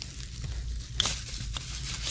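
Plastic bubble wrap crinkling as it is handled, with a sharp crackle about a second in.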